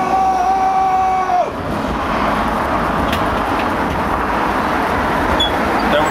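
A held high-pitched tone that cuts off about a second and a half in, then steady street traffic noise.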